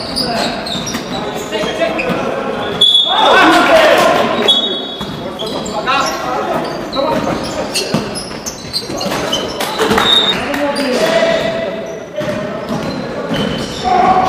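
Basketball game sound in an echoing gym: the ball bouncing and hitting, sneakers squeaking on the hardwood court, and players shouting, loudest about three to four seconds in.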